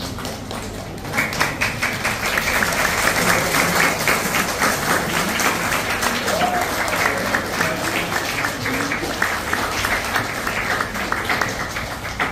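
Audience applauding, starting about a second in and dying away near the end, with faint voices underneath.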